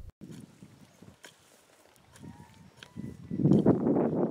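A hand hoe digging into dry, stubbly field soil: scattered soft knocks, then a louder stretch of chopping and scraping near the end.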